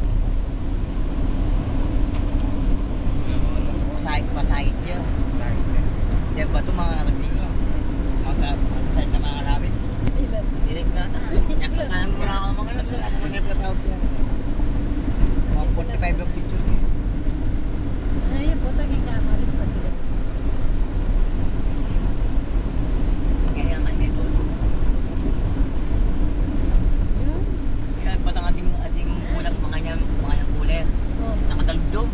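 Steady engine and road noise heard inside a moving car's cabin, with indistinct voices talking at times over it.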